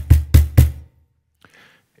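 Cajon bass tones struck with the hand: three quick, evenly spaced strokes in the first second, each with a short deep boom, closing the phrase before the playing stops.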